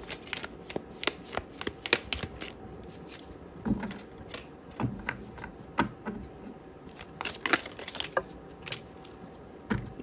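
A tarot deck being shuffled by hand: a quick run of card flicks and taps in the first couple of seconds, then scattered single taps and slaps of cards through the rest.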